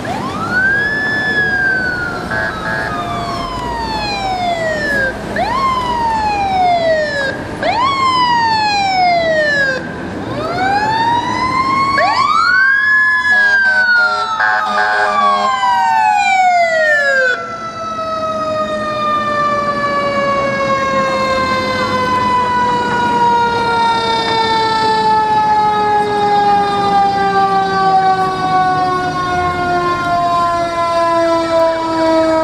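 Emergency vehicle sirens. A police cruiser's siren wails in several rising and falling sweeps of a few seconds each. It is followed by a fire engine's siren that winds down in one long, slowly falling tone.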